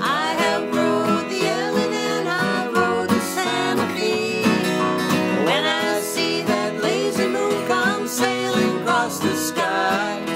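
Two acoustic guitars strumming an old-time country song while a woman sings the melody, her voice sliding up into held notes.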